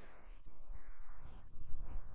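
A wooden spatula stirring and spreading marinated chicken pieces in a non-stick frying pan. It is a soft, uneven scraping that swells about half a second in and again near the end.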